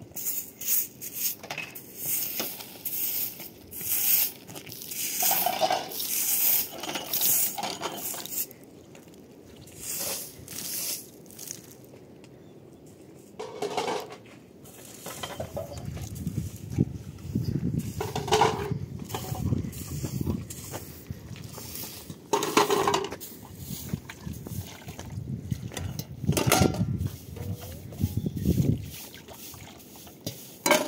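A straw broom sweeping a concrete step in a run of short brushing strokes, while dishes clink and water splashes in a plastic basin as they are washed. A low rumble runs under the second half.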